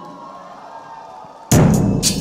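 A faint steady hum, then about a second and a half in a live band's drum kit comes in with a sudden loud drum and cymbal hit, starting the music.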